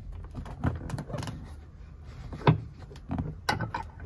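Small clicks and knocks of a LeeKooLuu wireless camera being fitted by hand onto its metal mounting bracket, with a sharper knock about two and a half seconds in and a quick cluster of clicks near the end.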